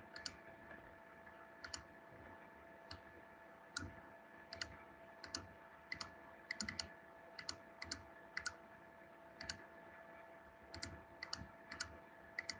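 Computer mouse buttons clicking, faint and at an irregular pace, some clicks in quick pairs, over a low steady electrical hum.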